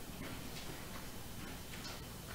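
Quiet room tone with a few faint, irregularly spaced clicks.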